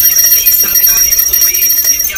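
A small brass puja hand bell (ghanti) rung rapidly and continuously, giving a steady high-pitched jangling ring.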